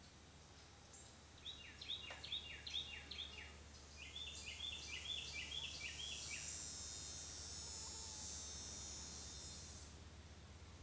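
A songbird singing two bouts of a quickly repeated, falling phrase, about four or five notes a second, over a soft steady background hiss. In the last few seconds a high, steady insect buzz takes over.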